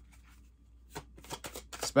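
Tarot cards being handled: a quiet start, then a quick run of short card flicks and snaps in the second half.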